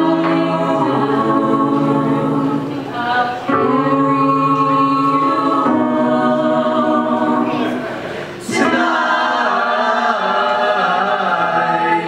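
A mixed group of young male and female voices sings long held chords in harmony. The chords break briefly about three and a half seconds in, then again near eight and a half seconds, where a short hiss comes before the next phrase.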